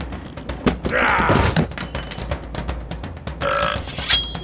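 A gruff, burp-like vocal grunt from a pirate character about a second in, and a shorter vocal sound near the end, over background music.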